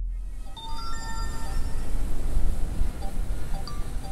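A few short electronic tones, like a brief chime or jingle, sounding in the first two seconds, with a couple of short blips later, over a steady hiss of outdoor noise.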